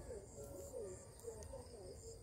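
Faint outdoor ambience of birds calling in short, curving notes, over a faint high insect chirp repeating about three times a second.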